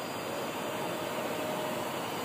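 Steady hiss-like background noise at an even level, with a faint steady hum that comes in and fades during the middle of the stretch.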